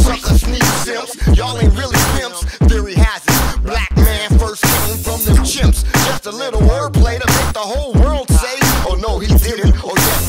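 Hip hop track: a beat with deep bass and regular drum hits, with a voice whose pitch glides up and down over it.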